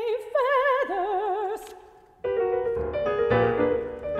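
Lyric soprano singing an art song with wide vibrato over grand piano accompaniment. About halfway through her phrase ends and the piano carries on alone with sustained chords and deep bass notes.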